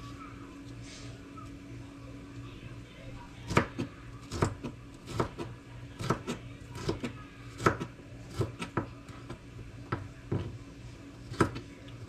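Chef's knife slicing a green bell pepper on a plastic cutting board: a run of irregular knocks of the blade on the board, about two a second, starting about three and a half seconds in. A steady low hum runs underneath.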